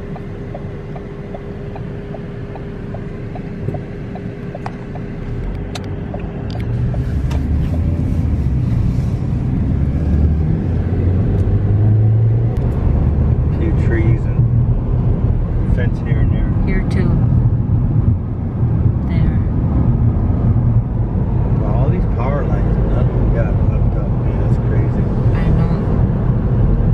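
Road noise inside a moving car: a steady low rumble of tyres and engine that grows louder about five seconds in as the car gathers speed, with a faint steady hum at first.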